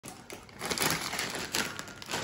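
Rapid crackling and rustling of food packaging handled by hand, in two bursts, the first longer.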